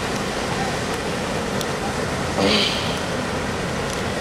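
A steady rushing background noise, with a brief murmur of a voice about two and a half seconds in.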